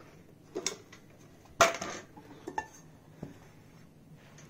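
Deep frying pans being handled and turned over: a couple of light clinks, then a louder knock of cookware with a short ring about one and a half seconds in, and a few softer taps near the end.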